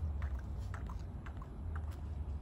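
Soft, irregular plastic clicks and crinkles as fingers squeeze the flexible drip chamber of a buretrol IV set, over a steady low hum.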